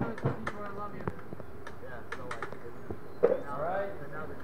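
People talking in the background, their words not clear, with scattered short sharp clicks; the loudest click comes a little after three seconds in.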